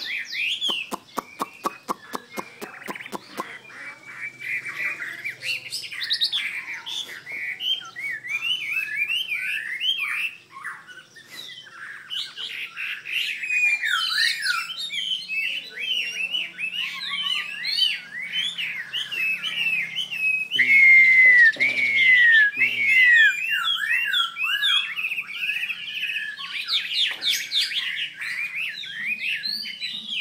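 Caged Chinese hwamei (họa mi) singing a long, varied warbling song of rapid rising and falling whistles that runs almost without a break. A quick run of regular clicks comes in the first few seconds, and the loudest phrases, clear falling whistles, come about two-thirds of the way through.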